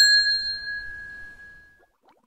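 A single bright bell ding, a notification-bell sound effect, ringing out with one clear tone and fading away over about a second and a half.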